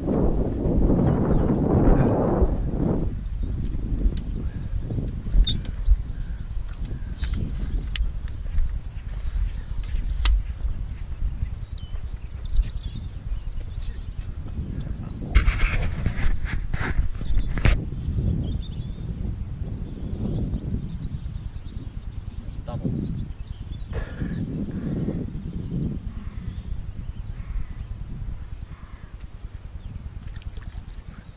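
Wind rumbling on the microphone of a body-worn GoPro, with rustling and a cluster of sharp handling knocks about halfway through as a hand moves close to the camera.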